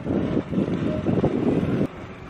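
Wind buffeting the camera's microphone: a loud, uneven low rumble that cuts off suddenly near the end.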